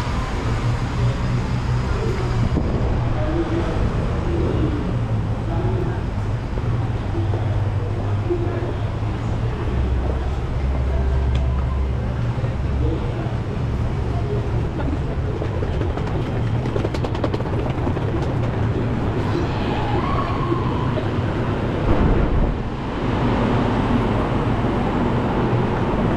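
Steady low rumble of an elevated metro station with a Rapid KL LRT train at the platform, and a brief louder noise about 22 seconds in.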